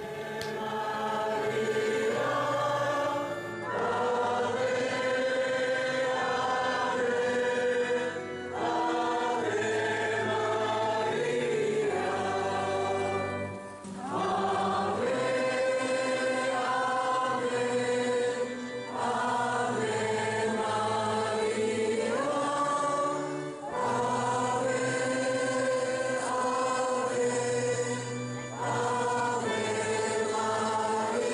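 A choir singing a slow chant in sustained phrases of about five seconds each, with short breaks between them.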